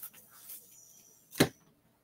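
Handling noise at a desk: a soft rustle, then one sharp knock or click about one and a half seconds in.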